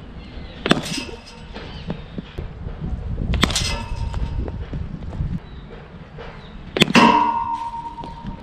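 Cricket ball struck with a bat in practice nets: three sharp cracks about three seconds apart, the last followed by a metallic ring lasting about a second.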